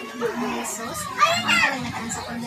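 Children's voices chattering and playing, with one child's high-pitched call rising and falling about a second and a half in.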